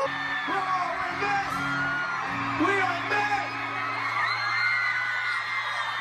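Arena concert crowd screaming and cheering, many high shrieks overlapping, over steady held notes of music from the stage.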